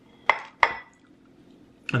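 Two sharp clinks of cutlery about a third of a second apart, the second ringing briefly.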